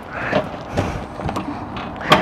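Rustling and a few light clicks of hands working the small power-cord hatch on a travel trailer's rear wall.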